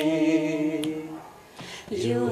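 A single voice singing unaccompanied, holding one long steady note that fades out a little past halfway; the singing starts again near the end.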